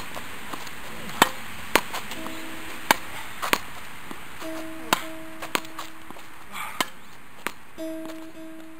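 A tennis ball being hit with tennis racquets and rebounding off a practice wall: sharp pops every second or so, often in pairs about half a second apart. From about two seconds in, sustained plucked-string music notes play under the hits.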